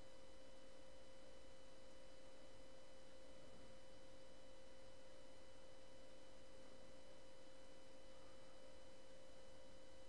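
Faint, steady, single-pitched whine over a low hiss. This is the background noise of the recording setup, with no other sound.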